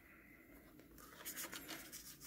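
Faint rustling and scratching of a paper CD sleeve being handled by hand, a few light scratchy strokes starting a little over a second in.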